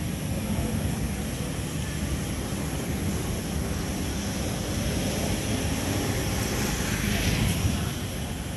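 Steady low rumble of street traffic, swelling for a couple of seconds near the end as a vehicle passes.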